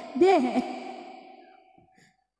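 A single short sigh-like vocal sound over a microphone and PA, with a lingering echo that fades away to silence over about a second and a half.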